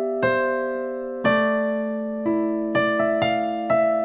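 Electronic keyboard with a piano voice playing a slow introduction phrase in C major: sustained chords with melody notes struck about every half second to a second, each ringing and slowly fading.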